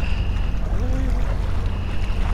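Steady low rumble of waterfront background noise, with a faint voice briefly about a second in.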